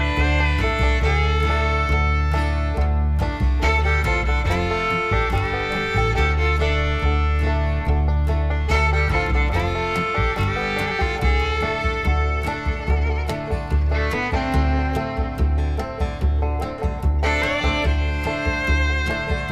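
Background music: a fiddle tune over guitar, with a steady bass and beat.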